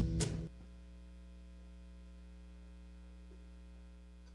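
Music cuts off about half a second in, leaving a faint, steady electrical mains hum from the sound system.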